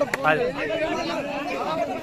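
Several people talking over one another: background chatter of men's voices.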